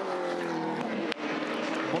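Holden Commodore Supercar's 5.0-litre V8 racing engine running at high revs down a straight, its pitch easing slightly, with a short break about a second in.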